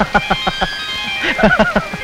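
Old Malayalam film song music: held high notes over a quick, even run of drum or plucked strokes.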